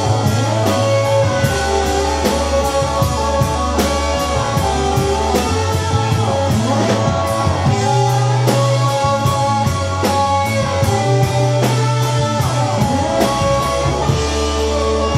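Live rock band playing an instrumental passage: electric guitar with bent, sliding notes over bass and drums, the cymbals keeping a steady beat.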